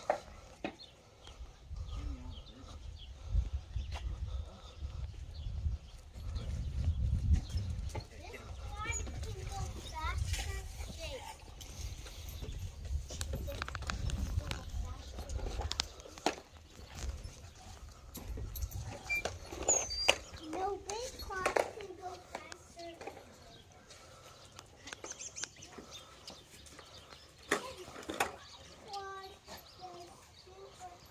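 Distant children's voices, calling and talking in scattered bursts, over a low rumble on the microphone that fades out about two-thirds of the way through.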